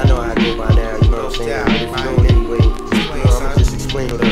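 Boom-bap hip hop beat with deep kick drums that drop in pitch and sharp snare hits, over a melodic part.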